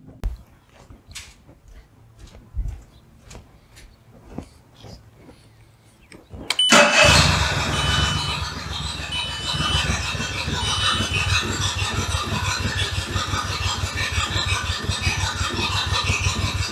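Faint clicks about twice a second, then about six and a half seconds in a Mercury 40 outboard motor starts and runs steadily, with three short high beeps soon after it catches. It is the motor running again after its vapor separator tank was replaced.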